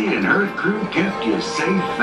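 A voice with music underneath, as from a public-address loudspeaker.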